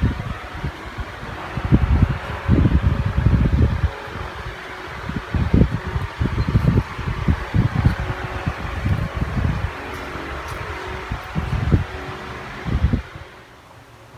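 Wind buffeting the microphone in irregular low rumbling gusts over a steady rushing background, cutting off suddenly about a second before the end.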